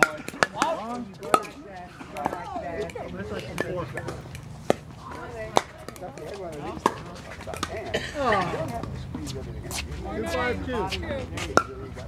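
Pickleball paddles hitting the plastic ball in a rally: sharp, short pops at irregular intervals of about a second, with voices talking in the background.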